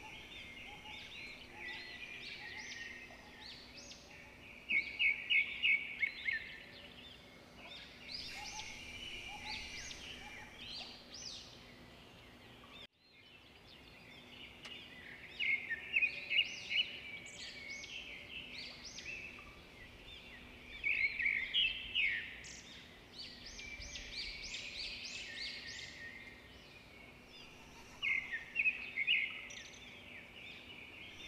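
Birds calling and chirping, with short loud bursts of rapid repeated notes every several seconds. The sound drops out for a moment about halfway through.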